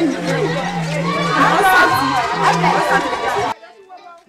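Speech: several voices talking over one another, which cut off abruptly near the end into quieter talk.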